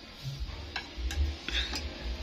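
A few light, sharp clicks at uneven intervals, over a low rumble.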